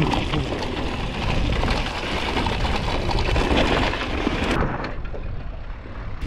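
Wind rushing over a helmet camera's microphone with tyre noise on dry dirt as a downhill mountain bike rides fast down the trail, a steady, loud rumbling hiss.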